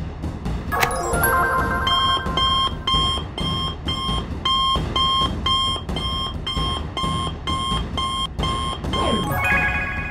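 Electronic alarm beeping: an emergency call alert coming in from a wrist communicator. It opens with a short chime, then beeps rapidly and evenly at about two beeps a second, over background music, and stops near the end.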